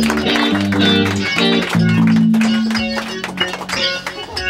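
Live rock band playing loudly: guitar chords that change about every half second, over sharp percussive hits.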